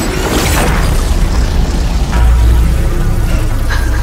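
Dramatic soundtrack music with cinematic sound effects: a whooshing sweep about half a second in, then a deep low boom rumbling under the music through the middle, and a short hit near the end.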